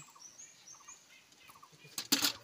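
Faint high chirps from a bird: a few short, thin notes in the first second, then a few soft small ticks.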